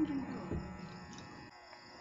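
A man's voice finishing a word right at the start, then a faint steady background hum that fades a little toward the end.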